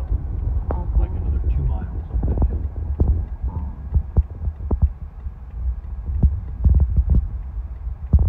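Car driving, heard from inside the cabin: a steady low road and engine rumble, with irregular short clicks and knocks scattered through it.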